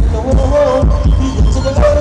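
Thai ramwong dance music from a live band, played loud, with a heavy booming bass beat under a wavering melody line.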